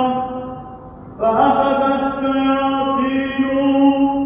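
A solo male priest's voice chanting the Arabic Gospel reading in Byzantine eighth tone, on long held notes. One note dies away, and just over a second in a new long, loud note begins and is sustained.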